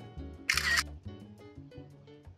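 Background music playing, with a single camera shutter sound, a short sharp burst, about half a second in; the shutter is the loudest thing.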